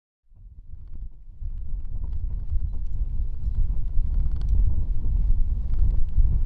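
Wind buffeting the microphone, a heavy uneven low rumble that fades in just after the start, with scattered sharp clicks over it.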